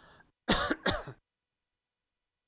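A man clearing his throat, two short rough bursts in quick succession.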